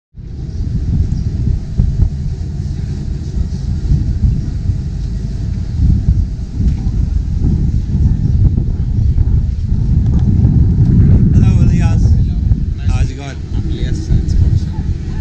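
Wind buffeting the microphone: a loud, uneven low rumble throughout. A voice is heard briefly near the end.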